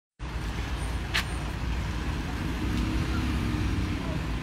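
Street traffic: a steady low rumble of road vehicles, with a passing engine's hum from about halfway through and a brief hiss about a second in.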